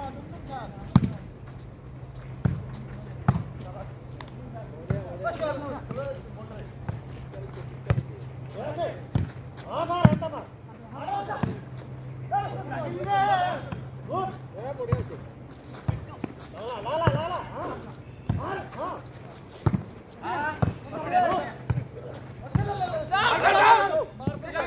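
A volleyball being hit again and again through rallies, sharp slaps of hands on the ball a second or more apart, with players' voices calling out between the hits that grow louder near the end.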